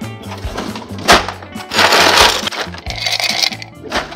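Bottom freezer drawer of a stainless refrigerator being pulled open for ice: a sharp knock about a second in, then two bursts of sliding, rattling noise, over background music.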